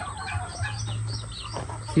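A flock of chickens clucking, many short high calls overlapping one another.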